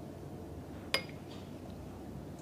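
A single sharp clink of a small drinking glass about a second in, ringing briefly.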